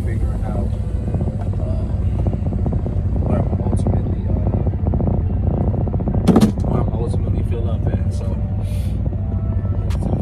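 Semi truck's engine and road noise as a steady low rumble inside the cab while driving, with music and a man's voice over it.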